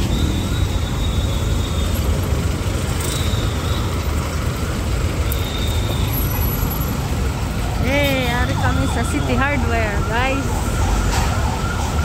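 Low, steady rumble of street traffic and engines. From about eight seconds in, an emergency-vehicle siren starts, its pitch quickly rising and falling over and over.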